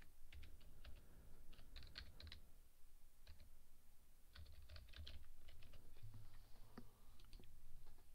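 Typing on a computer keyboard: faint, short bursts of quick keystrokes with pauses between them.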